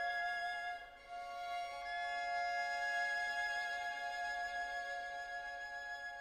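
A string quartet playing slow, sustained chords. The sound drops away briefly about a second in, then a new held chord comes in and carries on.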